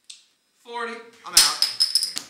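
Men's voices: a short vocal sound, then a louder, choppy outburst of voices with sharp, noisy edges, like shouting or laughter at the table.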